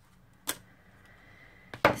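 Hands handling a planner and sticker sheet on a tabletop, giving two short clicks: a faint one about half a second in and a sharp, louder one near the end, in a quiet room.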